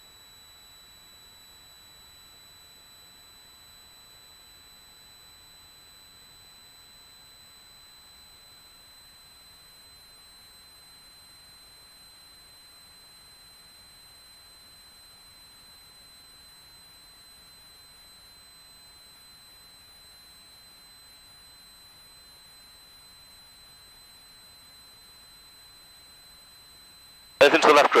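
Faint steady hiss with a constant high-pitched whine on a light aircraft's intercom audio feed; the engine itself is not heard. A voice breaks in near the end.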